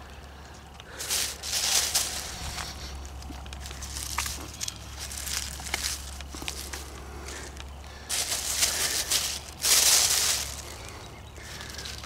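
Thin plastic grocery bag crinkling and undergrowth rustling as morel mushrooms are picked by hand and dropped into the bag. It comes in bursts, one about a second in and a longer one from about eight seconds, loudest near ten seconds.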